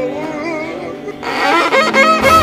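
Violin playing a melody with vibrato over sustained accompaniment chords; a little over a second in, the violin becomes louder and brighter.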